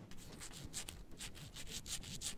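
Knife sawing through rope in a quick series of rasping strokes, about five or six a second.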